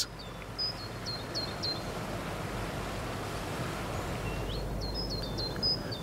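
A small songbird singing twice over a steady outdoor background hiss. Each phrase is a few quick high notes lasting about a second, one near the start and one near the end.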